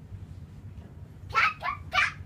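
A dog barking three times in quick succession, starting just past halfway through; each bark is short and falls in pitch.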